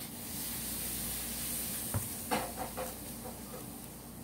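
Handling noise from a trading card in a clear plastic holder rubbed close to the microphone: a steady hiss for about two seconds, a single click, then quieter rustling.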